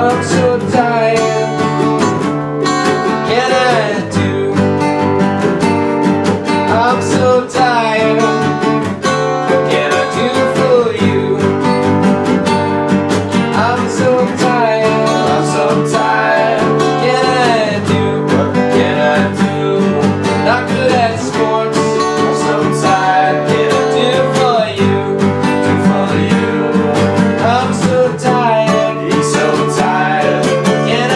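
Two acoustic guitars, a nylon-string classical and a steel-string, strummed together in a song, with voices singing along.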